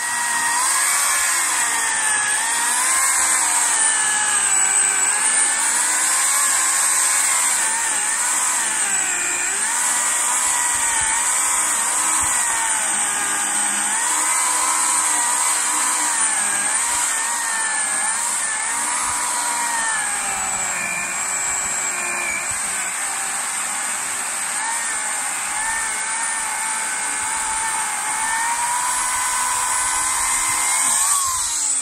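Chainsaw running continuously while cutting through a thick tree trunk into rounds. Its pitch wavers up and down as the chain bites into the wood and eases off.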